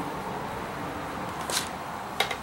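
Low steady background noise with one short, sharp handling sound, a tap or scrape, about one and a half seconds in.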